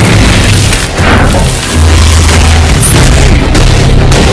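Loud action-film fight soundtrack: a heavy, booming low score with sharp impact hits, one about a second in and another near three seconds.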